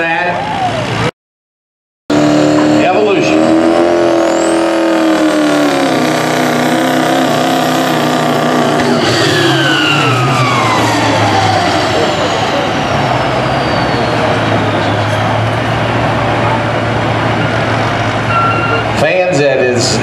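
Turbocharged diesel pickup truck engine running at full throttle while pulling a weighted sled, its steady pitched note carried under a turbo whistle. About halfway through, the whistle slides steadily down in pitch over a few seconds. The sound cuts out completely for about a second near the start.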